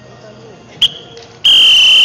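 A referee's whistle: one short blast, then about half a second later a long, loud, steady blast.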